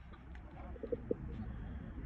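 Faint bird calls: a few short low notes about a second in, over a steady low rumble.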